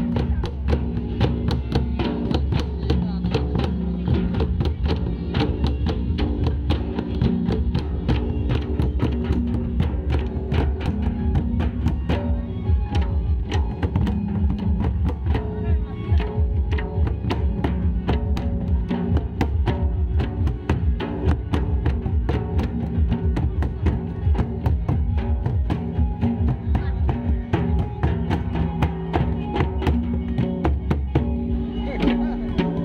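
Ho dama and dumang drums, a large kettle drum and barrel hand drums, beaten together by a group of drummers in a dense, steady rhythm.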